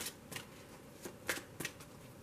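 A deck of tarot cards being shuffled in the hands, with a few soft, short card clicks.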